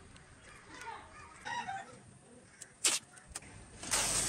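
A few faint clucks from a chicken in the background, then a short sharp rasp about three seconds in and a harsher rasping burst just at the end, from the insulating tape being pulled from its roll while the foam-board wing is taped.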